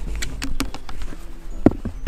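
Shetland pony's hooves and a person's running footsteps on arena sand: a few separate thumps and clicks. The loudest comes near the end as the pony's front hooves land on a pedestal.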